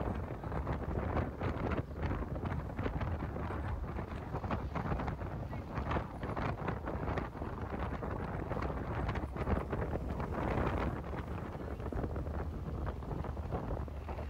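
Wind buffeting the microphone in an open convertible classic car on the move, over a steady rumble of road and engine noise.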